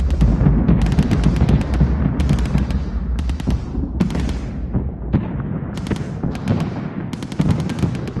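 Produced gunfire and explosion sound effects: short bursts of rapid automatic fire, about eight of them, over a deep booming rumble that fades about five seconds in.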